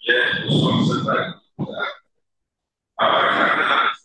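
A man's voice speaking into a microphone in short phrases, with a silent pause of about a second just after the middle.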